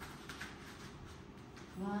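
Faint scuffing of bare feet on a foam floor mat as two wrestlers shuffle and grip, with a voice starting to count near the end.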